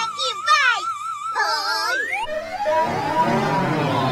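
A cartoon girl's high, wavering sing-song voice, then a rising whoosh about two seconds in, after which a busy cartoon brawl of noise and music takes over.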